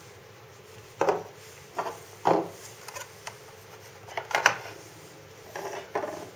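Knives and a plastic kitchen scale being handled and set down on a wooden tabletop: a string of separate knocks and clatters, the loudest a little over two seconds in and again past four seconds.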